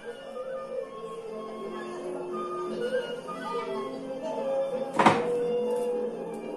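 Experimental sound-sculpture music: a layered texture of overlapping held tones and short sliding pitches. About five seconds in comes a single sharp knock, and a ringing tone holds after it.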